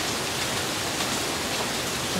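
Steady rain falling, an even hiss with no separate drops or knocks standing out.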